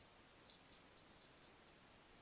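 A European hedgehog crunching dry kitten biscuits from a dish: faint, irregular small crunching clicks, about half a dozen, the sharpest about half a second in, over a quiet hiss.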